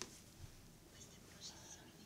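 Near silence in a pause between spoken sentences, with a few faint traces of a voice.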